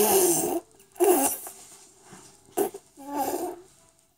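A child's breathy mouth and voice sounds, in four short noisy bursts with quiet gaps between them.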